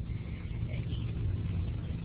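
Low, steady rumble of background noise from an open microphone on a voice call, with no clear speech.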